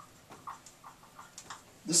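Dry-erase marker squeaking on a whiteboard in a quick run of short, faint strokes as a word is written.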